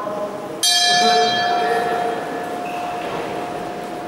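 Boxing ring bell struck once to start the round, about half a second in. It rings on and fades over the next couple of seconds.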